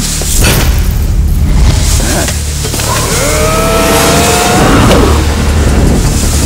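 Action-film soundtrack: a deep, continuous low rumble of score and effects, with a long held tone that rises slightly through the second half.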